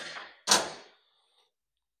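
Two metallic clanks of a steel wrench against the grinder's metal frame as the angle-lock nut is tightened again and the wrench comes off. The second clank is the louder and rings briefly.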